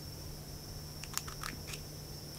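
Scissors blades cracking open cashew nut shells: a few short, crisp crunching snips in the second half.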